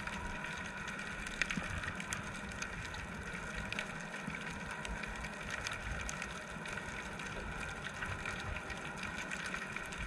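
Underwater ambience heard through a camera's waterproof housing: a steady hiss and low rumble with scattered faint clicks.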